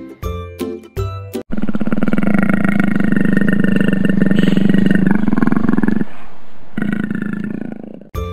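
A leopard's long, rasping growl of about four and a half seconds, followed by a shorter one near the end. A short bit of children's music with a beat comes just before it.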